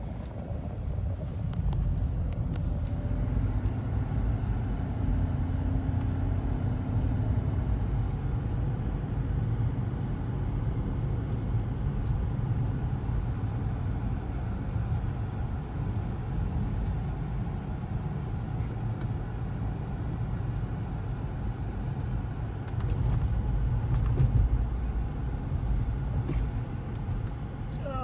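Car driving, heard from inside the cabin: a steady low rumble of engine and road noise, swelling slightly a little over three-quarters of the way through.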